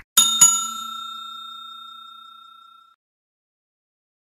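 Notification-bell sound effect from a subscribe animation: a short click, then a bell dings twice in quick succession and rings out, fading away over about two and a half seconds.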